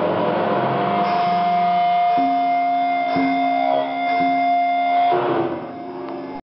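Live thrash metal band with distorted electric guitars holding long ringing notes as a song ends, with a couple of drum hits in the middle. The sound falls away about five seconds in.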